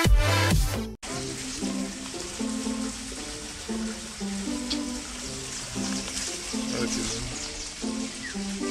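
Loud electronic dance music that cuts off abruptly about a second in, followed by a soft background tune of plain stepped notes over a steady hiss.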